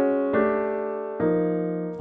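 Piano playing quartal voicings, block chords built in fourths. A chord already ringing is followed by two more, struck about a third of a second and a little over a second in, each held and fading.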